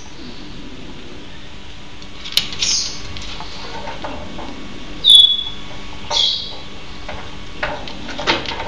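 Pygmy marmosets giving three short high-pitched calls, the loudest a brief whistle about five seconds in, with a sharp click just before the first call.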